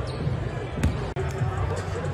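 Basketballs bouncing on a hardwood gym court, with a sharp thud a little under a second in, over a crowd's chatter. The sound briefly drops out just past one second where the footage cuts.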